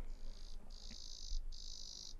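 Insect trilling, a high-pitched buzzing chirr repeated in trills about half a second long with short gaps between them.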